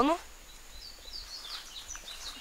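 A small bird chirping in a quick series of short, high calls.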